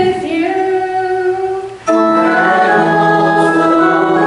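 A single voice chanting a sung liturgical line. A little under two seconds in, organ and voices enter together on sustained chords.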